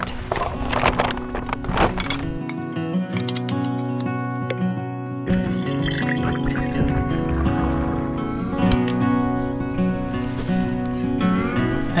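Background music of held, layered notes.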